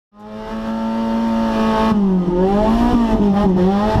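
Racing car engine running at high revs, fading in quickly and holding a steady pitch, then dipping and climbing again twice in the second half as the revs fall and rise.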